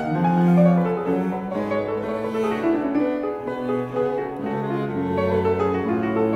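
18th-century chamber music for keyboard and strings, with cello holding low sustained notes under the keyboard and upper strings.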